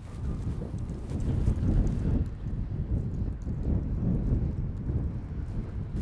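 Wind buffeting the camera microphone outdoors: an irregular low rumble that starts abruptly and keeps on unsteadily.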